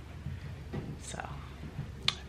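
Speech only: a woman softly says "so" about a second in, over a low steady room hum.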